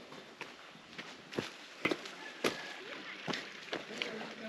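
Footsteps of people walking on a path, fairly faint, about two steps a second.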